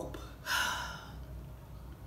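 A woman's breathy exhale starting about half a second in and fading over about a second: a sigh after swallowing a gulp of drink.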